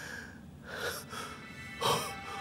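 A man breathing heavily, in a few noisy breaths, the loudest just before the end.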